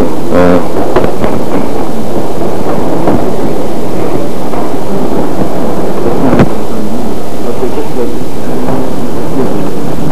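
Loud, distorted rumbling noise from an overdriven microphone feed, with a few words just after the start and a single sharp knock about six seconds in, consistent with the podium microphone being handled and adjusted.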